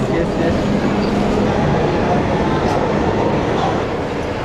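Munich U-Bahn train in an underground station: a steady rumble with a low hum, amid the noise of a busy platform.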